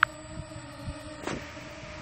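Yuneec Breeze 4K quadcopter hovering a short way off, its propellers giving a steady hum, with a short click right at the start.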